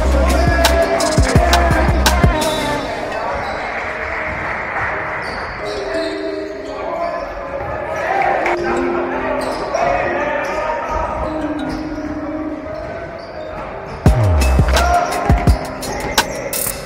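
A basketball bouncing on a hardwood gym floor during play, with players' voices in an echoing sports hall. Background music with a heavy bass beat plays over it for the first few seconds and comes back about two seconds before the end.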